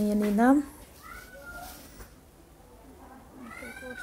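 A woman's voice holding a drawn-out word that ends about half a second in, then faint short voices in the background, once about a second in and again near the end.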